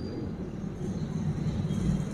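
Low, steady background rumble, with no clear strokes or tones.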